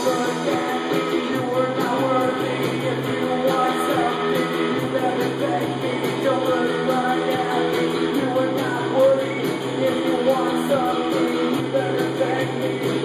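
Three-piece punk rock band playing live: electric guitar, bass and drum kit keeping a steady beat, with a man singing into the microphone.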